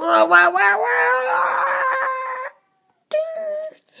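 A person's drawn-out vocal cry, wavering at first and then rising in pitch for about two and a half seconds before cutting off. It is followed by a shorter steady vocal note about three seconds in.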